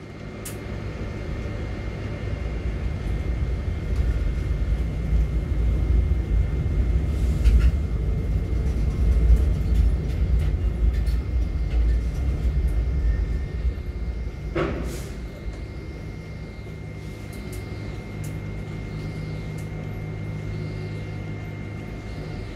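Heavy grab-crane machinery running with a steady low rumble, heard from high in the crane as the grab is moved between holds. The rumble builds over the first few seconds and eases about two-thirds of the way through, with a single sharp knock as it drops.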